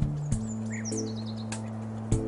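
Background music of sustained, held chords that shift shortly after the start, with a bird chirping a quick falling run of high notes about a second in.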